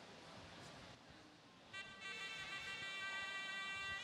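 Faint room noise, then a steady high held musical tone from the broadcast's background music begins a little under two seconds in and holds.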